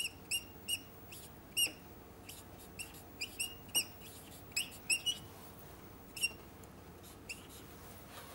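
Whiteboard marker squeaking against the board as a line of letters and bond strokes is written: about a dozen short, high squeaks, one per stroke, at irregular intervals, thinning out after about six seconds.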